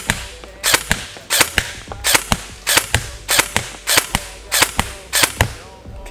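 EMG Sharps Bros Jack airsoft electric rifle firing single shots at a steady pace, about eight sharp shots roughly two-thirds of a second apart.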